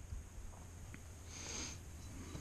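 A short sniff, about a second and a half in, over a low steady rumble.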